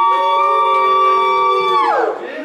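Several people whooping together in one long, high, held 'woo', rising at the start and falling away near the end: a celebratory cheer.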